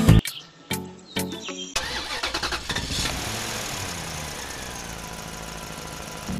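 A short musical phrase, then from about two seconds in a steady engine-like running sound whose pitch slowly falls.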